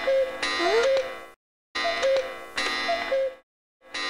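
Cartoon clock sound effect: a ticking, chiming clock cue with music, in phrases broken by two short silences, from the wall cuckoo clock.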